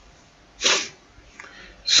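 A brief, sharp breath sound from the lecturer close to the microphone, about two-thirds of a second in, with a fainter breath just after, before he starts speaking again at the very end.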